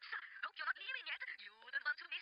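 Speech only: dialogue from the animated episode playing back.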